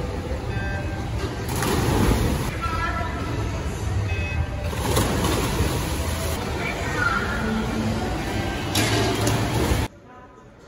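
Echoing indoor swimming-pool racket: swimmers splashing through a race while voices shout and cheer over the noise. It cuts off abruptly near the end.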